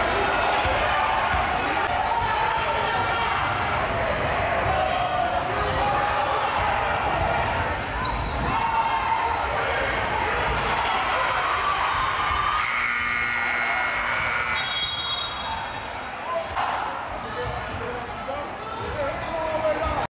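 Gym crowd voices and a basketball bouncing on the court. About two-thirds of the way in, a steady scoreboard horn sounds for about two seconds as the game clock runs out, ending the period.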